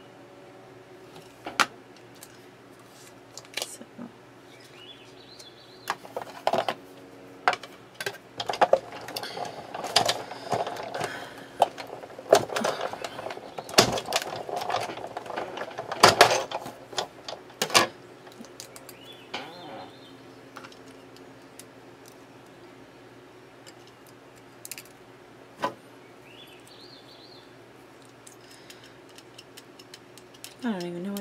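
Small irregular clicks, taps and paper rustling from die-cut paper pieces being poked out of a thin metal cutting die with a pick tool and from the die-cutting plates being handled. The clatter is busiest in the middle and thins to a few isolated clicks later. A faint steady hum runs underneath.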